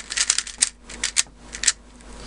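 YJ ChiLong 3x3 speedcube turned rapidly by hand: the plastic layers clack in a run of quick, irregular clicks, some bunched together and others spaced out.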